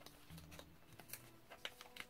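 Near silence, with a few faint ticks and rustles of fingers picking at the sticker sealing a brown paper envelope.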